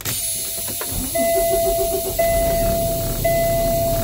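Inside a semi-truck cab, a low rumble and hiss come up suddenly. From about a second in, a dashboard warning chime sounds a steady tone that breaks and restarts about once a second.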